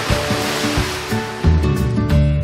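A rushing whoosh sound effect swells right at the start and fades out over about a second, laid over plucked background music.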